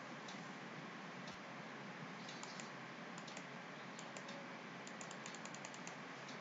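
Faint, irregular clicking at a computer over a steady background hiss, the clicks coming from about two seconds in and growing more frequent toward the end.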